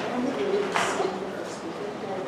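Indistinct voices of people talking, with a short sharp noise just under a second in.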